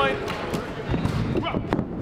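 A few scattered dull thuds on a wrestling ring's canvas and boards as the wrestlers move and set for a steel-chair swing, over a low crowd murmur in a large hall.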